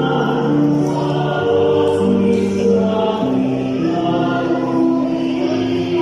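Church choir singing a slow Mass song in long, sustained chords that change every second or so.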